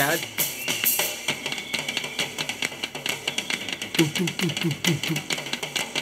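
Drum kit played in a live rock drum solo: fast strokes across the drums with cymbal wash, and a quick, evenly spaced run of strokes on the drums about four seconds in.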